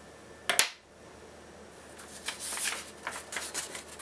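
A sheet of printer paper rustling and sliding as it is picked up and laid flat over a whiteboard, after a short click about half a second in.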